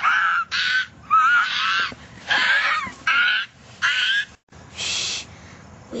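A child shrieking in a rapid series of short, high-pitched squeals that bend up and down in pitch, followed by a breathy hiss about five seconds in.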